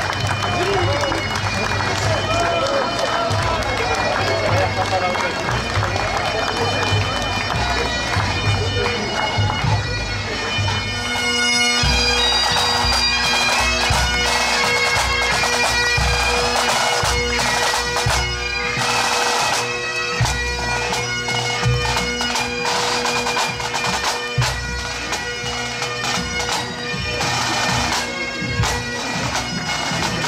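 A Scottish pipe band playing as it marches past: bagpipes with steady drones under the chanter's melody, and snare drums beating. The drones come in strongly about a third of the way in, after a stretch of crowd voices.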